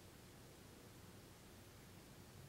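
Near silence: room tone, a faint steady hiss with a low hum underneath.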